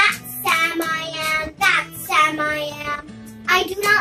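A young girl's high voice reading aloud in a sing-song, in several short phrases, over background music.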